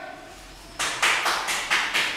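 A quick run of sharp claps, about four or five a second, starting about a second in.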